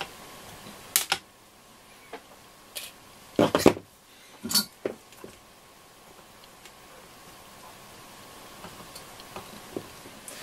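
Scattered sharp clicks and light clatter of small hand tools on a transistor radio chassis: side cutters snipping component leads and tools being handled and set down. The loudest cluster of clatter comes a few seconds in, and the second half is mostly still apart from a few faint ticks.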